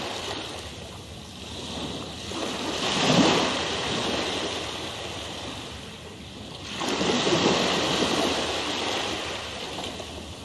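Ocean waves surging in and washing back, with one swell about three seconds in and another about seven seconds in.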